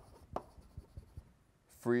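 Chalk writing on a blackboard as a word is written out, heard as a quick series of short taps and scrapes.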